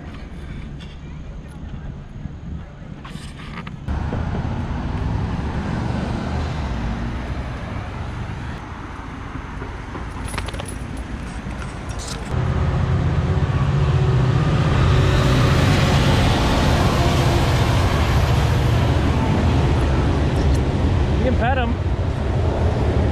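Road traffic passing, then from about halfway through a freight train crossing a steel girder railway bridge close by, a loud, steady low sound that holds to the end.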